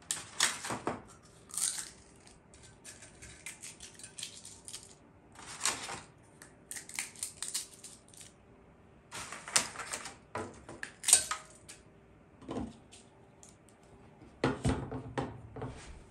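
Dry eggshells being crushed by hand and dropped into a food-recycler bucket: irregular clusters of brittle cracks and clicks, with short pauses between handfuls.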